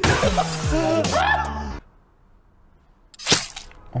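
Laughing voices under a loud, noisy edited sound effect for the first couple of seconds, then a sudden drop to near silence and a single short sharp hit a little after three seconds in.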